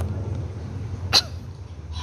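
Pause between phrases of the call to prayer: a steady low hum of the room and its sound system, broken by one brief sharp sound just past a second in.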